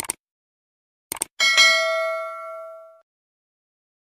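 Subscribe-animation sound effect: a click, then two quick clicks about a second in, followed by a notification bell ding that rings and fades away over about a second and a half.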